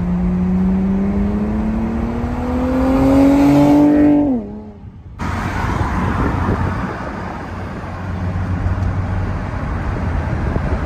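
Infiniti G37 V6 exhaust through an ISR single-exit system with resonator and stock cats, rising steadily in pitch under acceleration for about four seconds. The note then drops sharply as the throttle is lifted or a gear is changed. The sound cuts out for under a second, then steady road and wind rush follows with a low hum.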